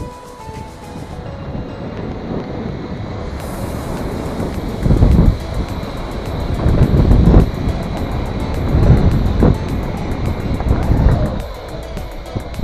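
Wind buffeting the camera's microphone as it is carried fast through the air, rising into loud, rough gusts from about five seconds in, under background music.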